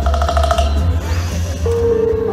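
Live band music over a concert sound system, heard from within the crowd: a heavy bass line under held notes, with a new held note coming in near the end.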